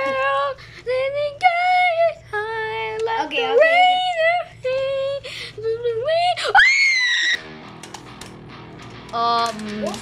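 Toy figure in demo mode playing a high-pitched, sing-song electronic voice over a steady hum. A bit after six seconds the voice slides sharply up into a squeal and cuts off. Faint clicks follow, and another high voice starts near the end.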